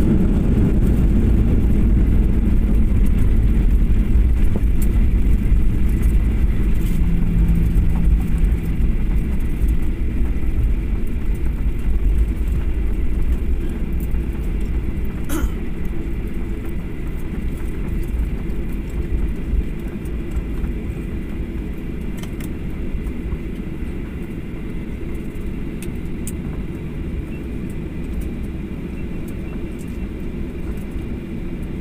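Cabin noise of a Boeing 737 jet's landing roll, a loud low rumble of the engines and the wheels on the runway with its spoilers up. It grows steadily quieter as the plane slows down. A single sharp click sounds about halfway through.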